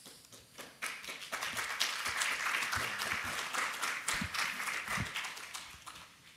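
Audience applauding, swelling about a second in and fading out near the end.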